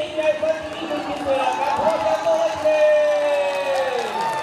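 Overlapping, indistinct voices of people along a race course, with a long drawn-out call near the end that falls slightly in pitch.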